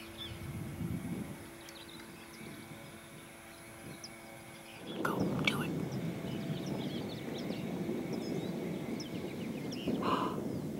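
Outdoor ambience with faint short bird chirps throughout, over a steady low hum; about halfway in, a louder low rushing noise sets in and holds.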